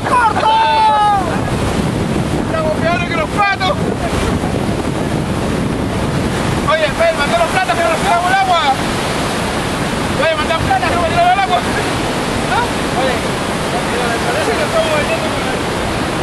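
The Petrohué River's whitewater rapids rushing loudly and steadily, with wind buffeting the microphone. People shout and whoop over the roar in four bursts.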